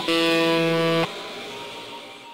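Rock band's closing chord on distorted electric guitar, held for about a second, then cut off sharply and left to ring out and fade.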